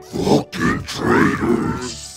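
A deep, rough, growling vocal sound, a menacing distorted growl.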